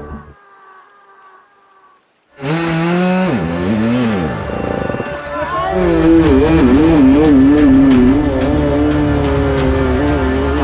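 Dirt bike engine revving hard from about two and a half seconds in, its pitch swinging up and down, then held at high revs with a wavering note and a run of sharp knocks as the bike gets under way. Before that there are quieter falling tones and a brief silent gap.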